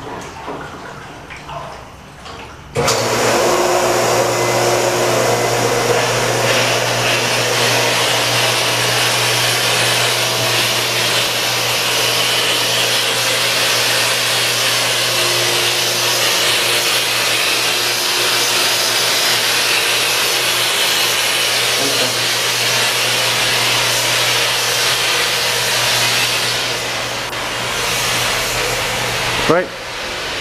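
Swimming-pool filter pump running: a loud, steady motor hum with a rushing-water noise. It starts abruptly about three seconds in and drops away just before the end.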